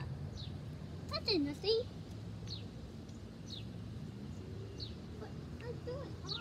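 A bird calling over and over with short, high, downward-sliding chirps about once a second, over a steady low outdoor hum.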